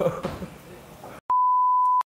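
A man's laughter trails off, then after a moment of dead silence a steady single-pitch beep sounds and cuts off abruptly. The beep is the broadcast test tone that goes with TV colour bars, used here as an edit gag.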